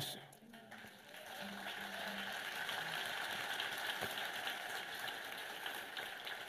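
A congregation applauding: many hands clapping together, building up about a second in and then holding steady.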